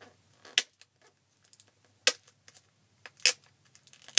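Plastic shrink-wrap on a Blu-ray case being picked at and peeled off with fingernails: sharp crackles, three louder ones about a second or so apart, with lighter ticks between.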